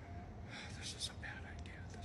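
Faint whispering: a few short, hushed phrases with no voiced speech.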